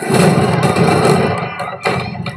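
Film trailer sound mix of a battle scene: a loud, dense rumble of music and commotion, with a wavering higher tone over it and a single sharp bang near the end.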